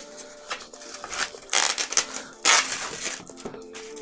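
Cardboard packaging being handled and opened: a string of short crinkling, scraping rustles as carton flaps are pulled open and a white inner box is slid out, the loudest about two and a half seconds in.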